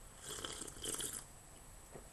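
A person slurping twice from a mug, two short sips in quick succession.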